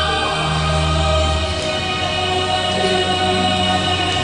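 Music with sustained choir-like voices holding long notes; a low held bass note drops out about one and a half seconds in.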